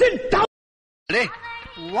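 Short film dialogue clips: a voice speaking with strongly swooping pitch, cut off half a second in by a moment of dead silence, then another voice starting about a second in.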